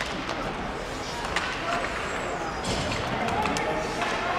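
Ice hockey play on the rink: skates on the ice and sticks and puck clacking, with a sharp knock right at the start and another about a second and a half in. Indistinct voices rise from the rink near the end.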